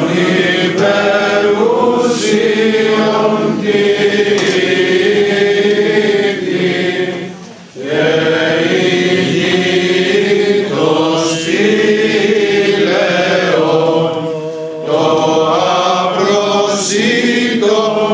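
A group of clergy and laypeople chanting a Greek Orthodox hymn together in unison, in sustained phrases. There is a short break for breath about halfway through and another near the end.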